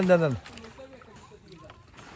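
A man's voice giving one short, loud exclamation whose pitch falls steeply, over in under half a second; after it only a faint low background remains.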